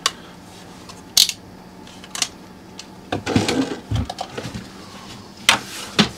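Handling sounds of a plastic portable car refrigerator and a multimeter: a few sharp clicks spaced a second or so apart, a cluster of knocks about three seconds in, and another click near the end as the lid is opened. A faint steady hum runs underneath.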